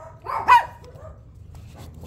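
Toy poodle puppy giving one short, sharp yip with a rising pitch about half a second in, while the puppies play-fight in their pen.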